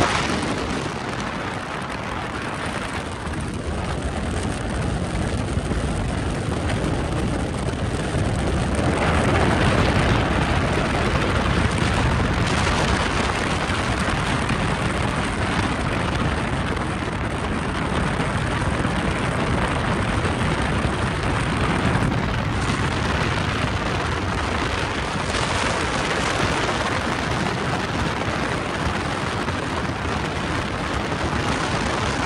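Loud, steady rushing noise with no clear engine tone, swelling about nine seconds in: wind and vehicle noise blasting a microphone on a moving car.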